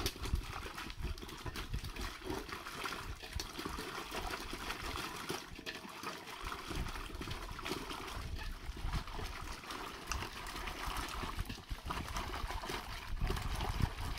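Peeled cassava pieces being washed by hand in a metal basin of water: continuous sloshing and splashing, with frequent small knocks of the pieces against each other and the basin.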